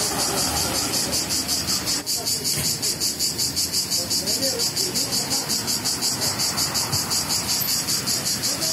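A cicada singing in the tree canopy: a loud, high-pitched rasping buzz that pulses evenly about five times a second.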